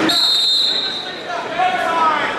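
Referee's whistle: one shrill, steady blast of about a second that stops the wrestling. Shouting voices from the crowd follow.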